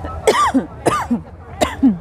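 A woman coughing three times, short sharp coughs about two thirds of a second apart. The oily, spicy masala she has just eaten caught in her throat.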